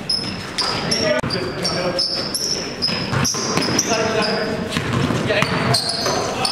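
Indoor basketball game: sneakers squeak again and again on the court floor, the ball bounces, and players' voices call out around them.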